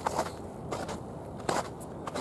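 Footsteps of a person walking on icy winter ground, a step roughly every three-quarters of a second, the one about a second and a half in the loudest.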